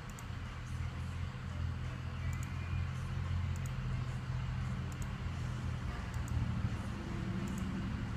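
Ford F550's diesel engine idling steadily at about 640 rpm, heard at a distance as a low, even hum, while its variable-geometry turbo is commanded closed in steps for a boost test. The idle does not change and boost barely rises, which the technician finds suspect: these turbos are known to carbon up.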